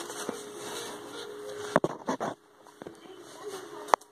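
Grey paperboard being handled and folded into a box, with soft rustling and two sharp clicks, one about halfway through and one at the end.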